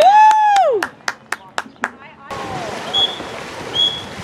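A spectator's loud, high, drawn-out yell, rising, holding and falling away, then about five quick claps in a steady rhythm. Near the end come two short, high whistle blasts, typical of a water polo referee's whistle.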